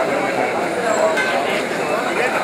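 Crowd chatter: many voices talking at once in a steady, dense babble.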